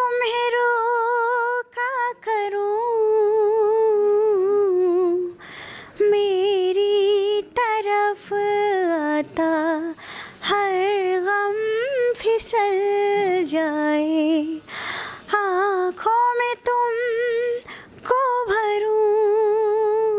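A woman singing unaccompanied into a handheld microphone: phrases of long held notes with a wavering vibrato, broken by short breaths.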